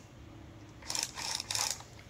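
Handling noise from a small battery chainsaw with a plastic body: a quick run of light clicks and rattles about a second in, as the saw is lifted and turned in the hands.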